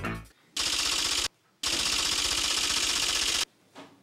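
Two bursts of rapid, machine-gun-like rattling clicks, a short one and then a longer one, each starting and stopping abruptly.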